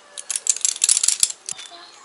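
Metal bits and rings on hanging horse tack jingling and clinking as a hand shakes them: a quick run of bright clinks lasting about a second and a half.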